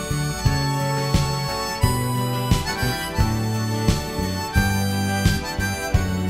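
Harmonica playing an instrumental melody over a guitar-led backing with a steady beat.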